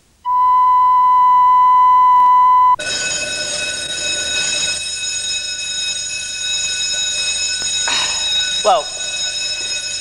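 A steady 1 kHz censor's bleep, held for about two and a half seconds, cutting across the speaker mid-sentence. After it, a steady high-pitched electrical whine with a brief voice near the end.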